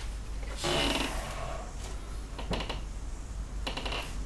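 A painter's breath and the small clicks and taps of brush and palette being handled at a paint trolley: a short breathy noise about half a second in, then two quick clusters of clicks, one past the halfway mark and one near the end, over a low steady hum.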